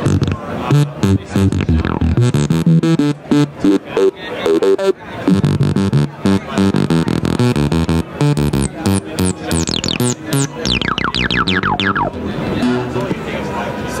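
Studio Electronics Boomstar SE80 analog synthesizer playing a fast, repeating low note pattern while its knobs are turned. From about eight seconds in, a run of quick falling sweeps cuts across it. The sound comes through its CS-80-style dual resonant filter, in an 'impolite mood'.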